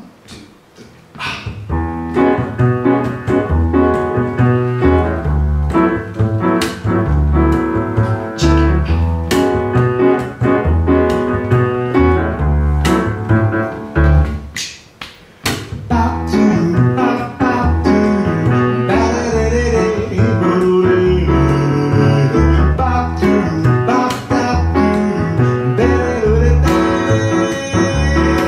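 Upright piano and plucked double bass playing an upbeat bossa nova tune together. The music starts about a second and a half in and breaks off briefly about halfway before going on.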